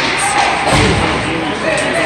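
A dull thud about three-quarters of a second in, among the knocks, clatter and raised voices of an ice hockey game in an echoing rink.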